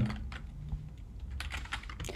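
Typing on a computer keyboard: a few scattered keystrokes.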